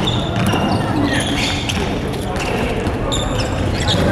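Indoor volleyball rally in a large sports hall: the ball being struck and players' shoes on the wooden court, with players calling out.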